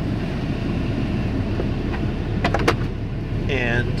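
6.7 L Cummins diesel running at a steady low idle, heard from inside the cab, with a few sharp plastic clicks from the interior trim about two and a half seconds in.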